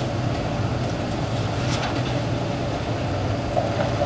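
Steady low background hum of room noise, with no speech.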